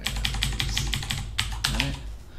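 Computer keyboard typing: a fast run of keystroke clicks while code is being edited.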